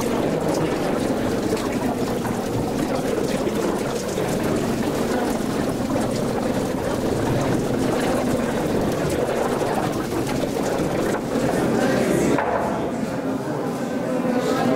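Many people talking at once in a large tiled hall, a steady babble with no single voice standing out, with scattered footsteps on the hard floor.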